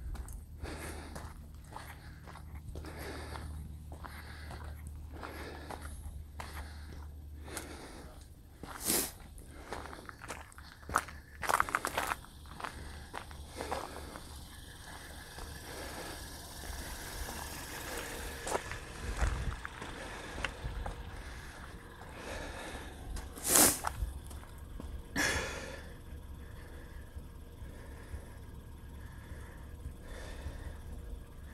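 Footsteps crunching on a gravel lot at a brisk walk, about two a second, over a low wind rumble on the microphone. Later come a few louder knocks and rustles.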